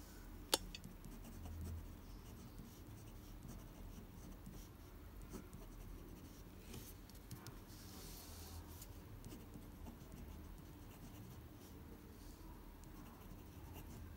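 Pen scratching across paper while writing cursive script, faint, in short strokes with small pauses between words. A single sharp click about half a second in.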